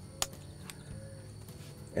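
A few faint, sharp clicks from camera gear being handled, over a low steady hum.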